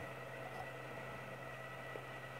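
Maspion electric desk fan running off a homemade PWM inverter: a faint, steady low hum with a faint steady high tone above it.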